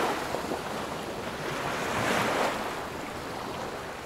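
Ocean waves washing with a rush of wind, surging once about two seconds in and then slowly dying away.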